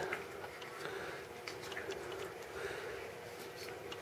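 Quiet handling sounds of a rubber ranger band being peeled off a metal Altoids tin: a few soft, faint clicks and rubs over a low steady room hum.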